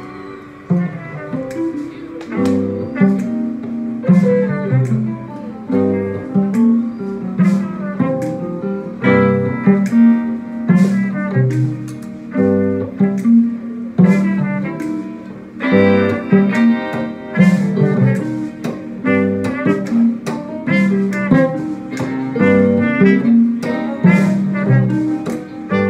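A small live band playing an instrumental passage, with guitar to the fore over a steady bass line.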